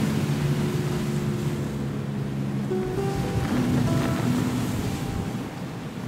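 Steady rush of wind and rough sea around an open boat underway, mixed with background music of held notes that change pitch a few times.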